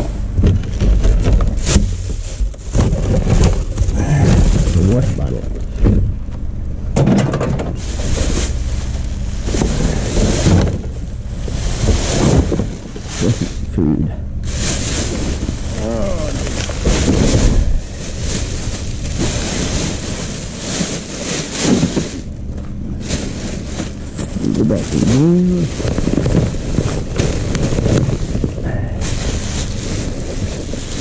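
Plastic rubbish bags rustling and crinkling as they are pulled about in wheelie bins, with irregular knocks and a steady low rumble of handling noise on the microphone.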